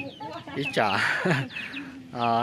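Women talking in Hmong, in conversation.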